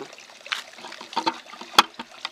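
Loose compost crumbling and rustling as a hand handles a pulled radish in a plastic pot, in short irregular crackles, with one sharp click near the end.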